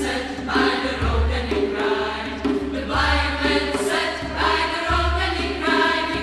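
A choir singing in harmony, several voice parts held together in sustained chords, with a low pulse swelling about every two seconds beneath the voices.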